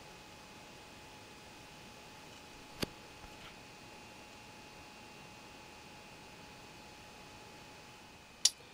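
Quiet room tone with a faint steady hum, broken by one sharp click a little under three seconds in.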